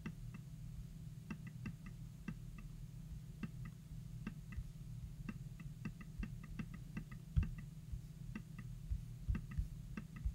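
Faint, irregularly spaced small clicks and ticks over a low steady hum, with a louder low knock about seven seconds in.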